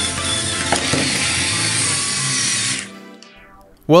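The car's small yellow plastic DC gear motors whirring as they spin the wheels, cutting out about three seconds in and winding down. They run on their own as soon as the battery is connected, apparently because the radio receiver is not connected.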